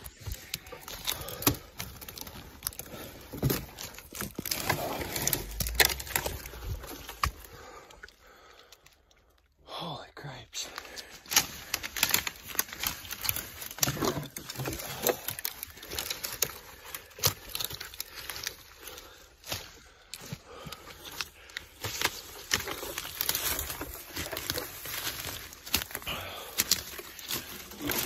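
Close rustling and scraping handling noise: a hand-held phone microphone rubbing on clothing and pack straps while branches and twigs brush past during a climb through brush. The crackling goes on irregularly, with a short quiet gap about a third of the way in.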